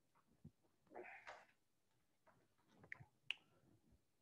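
Near silence: room tone, with a faint brief sound about a second in and a small click near the end.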